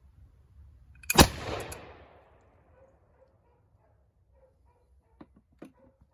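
A .50-calibre matchlock pistol fires about a second in. There is a softer crack a split second before the loud main report, which echoes away over about a second. Near the end come two light knocks as the pistol is set down on a wooden table.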